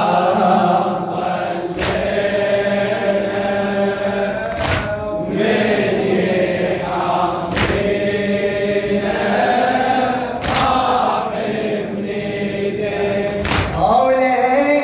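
A man chanting a Husseini lamentation (latmiya) in Arabic into a microphone, with a loud beat struck in time about every three seconds.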